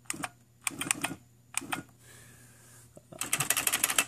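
IBM Personal Wheelwriter 2 electronic typewriter typing: a few scattered daisy-wheel strikes, then a fast run of about a dozen strikes near the end.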